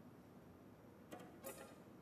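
Near silence: room tone, broken by two faint short noises, one about a second in and a slightly louder one about half a second later.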